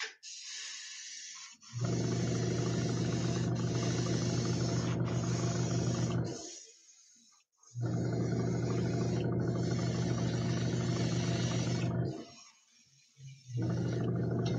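A small airbrush compressor runs with a steady hum while the airbrush sprays with an air hiss. It starts about two seconds in, stops briefly around six seconds, runs again from about eight to twelve seconds, and starts once more just before the end.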